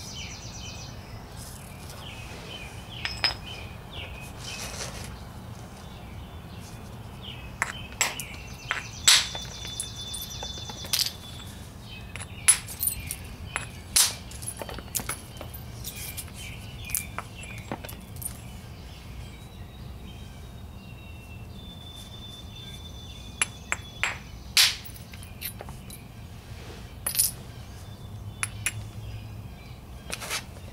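Quartzite hammerstone striking a stone preform in hard-hammer flintknapping, detaching flakes: about fifteen sharp knocks and clinks at irregular intervals, the loudest near the middle.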